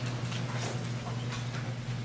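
Room tone in a pause between sentences: a steady low electrical hum with scattered faint ticks and clicks.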